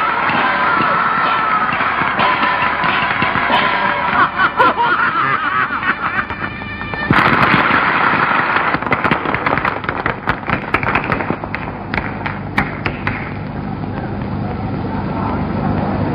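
Chinese opera stage music with voices, pitched and wavering. About seven seconds in, an audience suddenly breaks into loud applause, a dense crackle of clapping that thins out into crowd noise after a few seconds.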